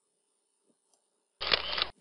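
A single short camera-shutter sound effect, about half a second long, starting about one and a half seconds in, marking a slide change in a presentation. Before it, near silence.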